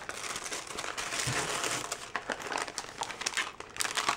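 Tissue paper and plastic candy packaging crinkling as they are handled, dense for about two seconds and then thinning to scattered crackles.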